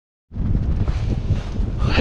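Gusting wind buffeting the camera's microphone: a dense, rumbling noise that cuts in abruptly just after the start. It is an incredibly windy day.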